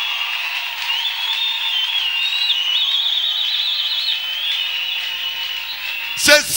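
A high, thin whistling tone wavering over a steady hiss, warbling rapidly for about a second midway.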